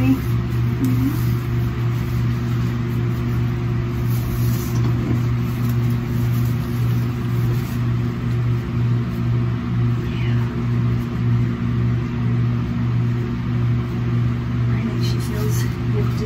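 Steady low hum of a small electric motor, holding one even pitch.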